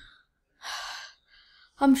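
A boy gasps once through his open mouth about half a second in, with a fainter breath after it, then starts to speak near the end. He is gasping from the burn of an extremely hot chili chip.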